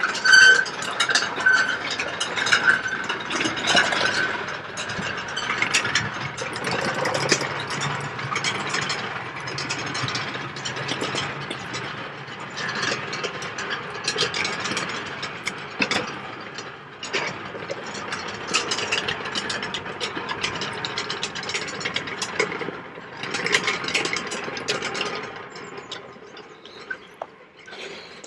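A row of prayer wheels being spun by hand one after another, turning on their mounts with a run of irregular clicks and rattles.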